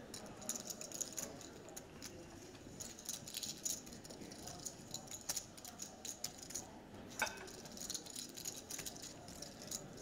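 Poker chips clicking together in a player's fingers at the table: faint, irregular small clicks, with one slightly louder click a little after seven seconds in.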